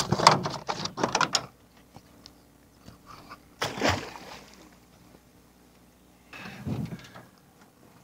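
Knocking and clattering against the side of an aluminium jon boat for the first second and a half, then a single splash in the creek a little under four seconds in, and a duller knock near the end.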